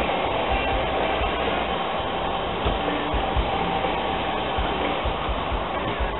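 Steady outdoor street background noise, an even continuous hiss with a faint steady tone running through it and no distinct single event.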